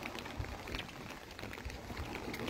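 Faint footsteps and phone-handling noise from a person walking while holding the recording phone: soft low thumps and light scattered clicks.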